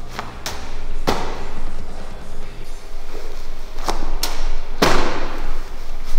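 Medicine ball (wall ball) thudding against the wall target and slapping back into the athlete's hands on the catch: several sharp thumps in two clusters about three and a half seconds apart, one per rep.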